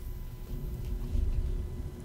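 A faint low rumble of background noise, with no clear event.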